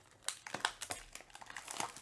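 Clear cellophane wrapping from a card box crinkling as it is pulled off and crumpled in the hands, a quick run of sharp crackles.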